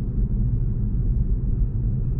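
Low, steady road and tyre rumble inside the cabin of a Tesla Model 3 dual-motor electric car driving at about 35 km/h.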